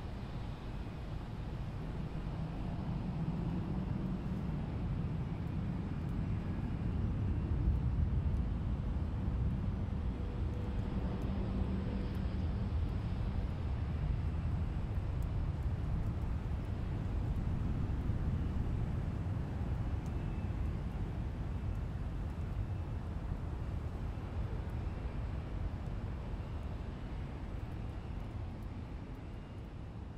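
Low, steady rumble of jet aircraft engines in an airport ambience, swelling a little twice and fading near the end.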